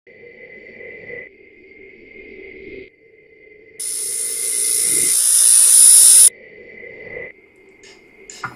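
Glitchy logo-intro sound effect: a steady high tone over a low hum, broken off and restarted a few times. About four seconds in, a loud burst of static hiss swells for a couple of seconds and cuts off suddenly, then the tone and hum return.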